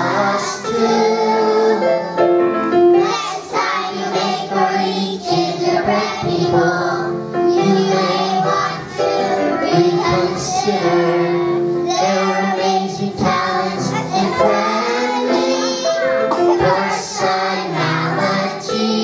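Children's choir singing a song, the sung lines rising and falling over held steady notes.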